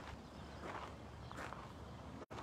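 Footsteps walking on sandy ground: a few soft steps, one about every two-thirds of a second.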